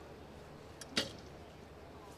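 A recurve bow being shot: a faint click, then a moment later the sharp snap of the bowstring at release, about a second in.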